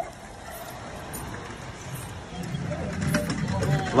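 Mule-drawn cart moving over cobblestones: scattered hoof clops and wooden wheel knocks. A low engine rumble from a vehicle builds over the second half.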